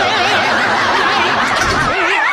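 Snickering laughter with a rapidly wobbling, warbling pitch, continuous throughout.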